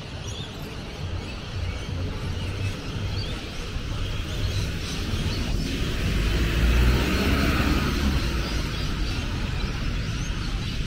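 Street traffic on a city road: cars driving past with a steady low rumble. One vehicle passes close, swelling and fading about six to eight seconds in, and this is the loudest moment.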